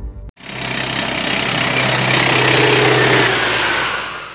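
Loud engine noise over a steady low hum, swelling over about two seconds and then starting to fade near the end.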